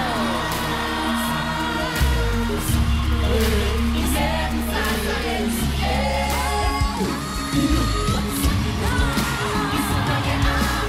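A youth choir singing in chorus over music with a deep, sustained bass and a steady beat.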